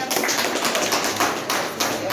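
People clapping their hands: a dense run of quick claps throughout.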